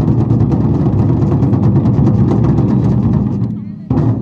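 Ensemble of large red barrel drums played in a fast, continuous roll, loud throughout and easing off slightly near the end, then one sharp stroke just before the end.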